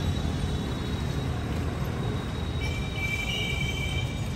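Street traffic ambience: a steady low rumble of passing motor scooters and cars. Near the end a high, steady tone sounds for about a second and a half.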